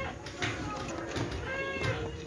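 A hammer knocking lightly on terracotta clay tiles a few times as they are tapped into place.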